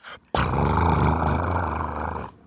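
A long, low, buzzing fart sound that starts abruptly and holds steady for about two seconds.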